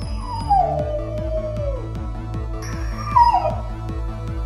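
Dog whining twice over electronic background music with a steady beat: a long falling whine in the first two seconds, then a shorter, louder one about three seconds in.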